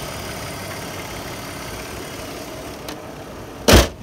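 BMW E53 X5 3.0i's inline-six engine idling steadily, heard with the hood open. Near the end, a single loud thump as the hood is shut.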